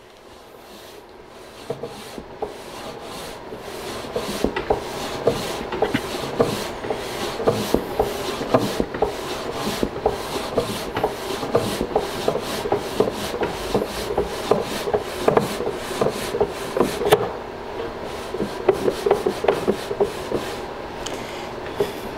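Wooden drawer being worked in and out of its cabinet opening, wood rubbing on wood with many small clicks and knocks; faint at first, it grows louder after a few seconds. The drawer is still snug, binding at its sides as the piston fit is tested.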